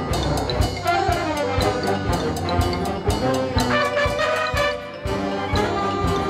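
Concert band playing, brass and woodwind chords over a steady drum beat. The band drops back briefly near the end before coming in again.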